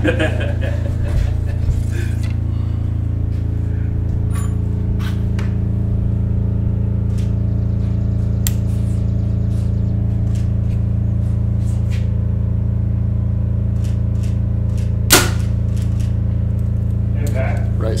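A single compound bow shot: one sharp snap of the string release about fifteen seconds in, after a few faint clicks, over a steady low drone.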